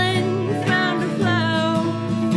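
Live acoustic country-style music: a strummed acoustic guitar keeps a steady rhythm under a lead melody line that slides up into its notes and wavers.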